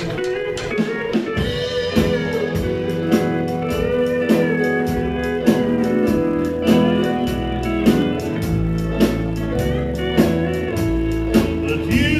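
Live country band playing an instrumental intro: a guitar lead with bending notes over keyboard, bass and a drum kit keeping a steady beat.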